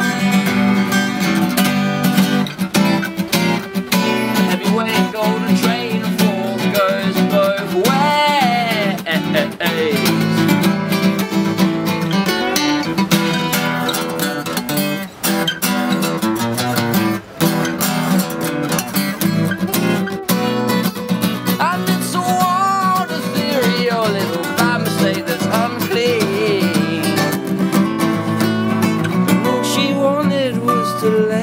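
Live acoustic band music: strummed acoustic guitars playing steady chords, with a melody line bending over them about eight seconds in and again near the end.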